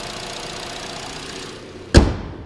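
Chevy Cruze 1.8-litre Ecotec four-cylinder idling steadily under an open hood, then one loud thump near the end as the hood is shut.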